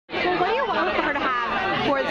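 People talking, with chatter around them.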